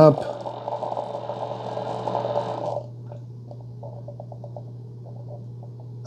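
Keurig K-Iced coffee maker finishing a 12-ounce fresh-water rinse: the pump runs and water streams into the measuring cup, cutting off about three seconds in, then a few last drips over a low hum.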